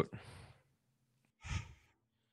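A person's soft breathing: a faint exhale trailing off in the first half second, then one short sigh or breath about one and a half seconds in.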